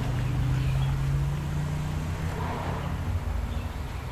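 A steady low mechanical hum, like a motor running, whose tone shifts slightly about halfway through.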